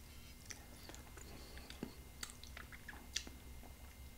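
Faint mouth sounds of a man eating whipped cream from a spoon: a scattering of small, soft clicks and smacks.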